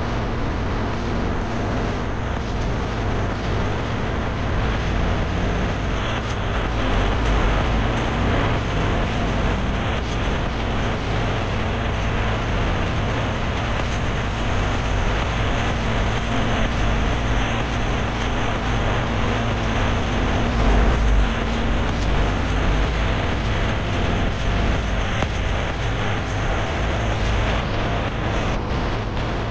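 Car driving at a steady speed along an asphalt road: an even rumble of tyres and engine, with no sudden events.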